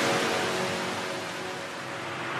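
Techno track passing through a transition: a white-noise wash, like surf, fades down over a faint sustained tone and begins to swell again near the end.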